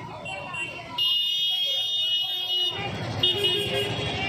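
A high-pitched vehicle horn held for nearly two seconds, then sounding again near the end, over the chatter of a street crowd.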